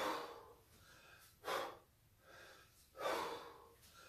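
A man breathing hard from the effort of kettlebell snatches: loud, sharp breaths about every second and a half, two to each rep, with softer breaths between.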